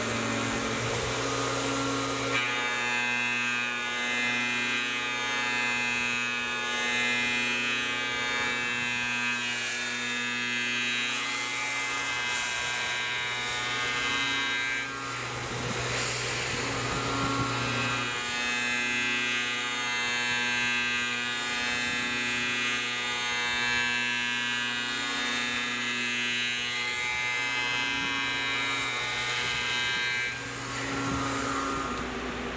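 Tormach 1100M CNC mill spindle and end mill cutting a circular pocket into a metal plate: a steady whine of many stacked tones over a low hum, dipping briefly about halfway through.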